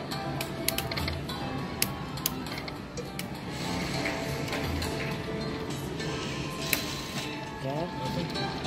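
Aristocrat Lightning Link 'Eyes of Fortune' slot machine playing its free-game bonus sounds: electronic music and tones with a run of sharp clicks as the win meter counts up and the reels spin into the next free game.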